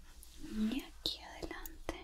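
A woman's soft whispered voice, with a few sharp snips of hair-cutting scissors.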